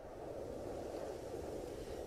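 A recorded cold-wind sound effect playing back: a steady, even wind hiss that swells up over the first half second and then holds.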